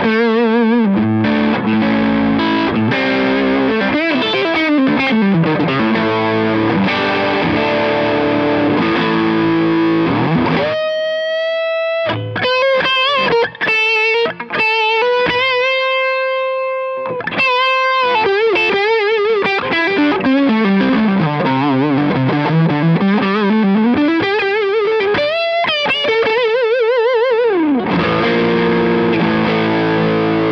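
Les Paul electric guitar played through an overdriven amp. It plays chords and riffs, then sustained single-note lead lines with wide vibrato and bends, including a slow slide down and back up in pitch, and returns to chords near the end.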